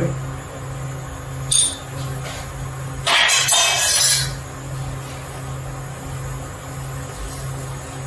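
Steady low hum of a commercial kitchen while a pan heats on the hob. A light clink comes about a second and a half in, and a brief, louder rustle of handling noise about three seconds in.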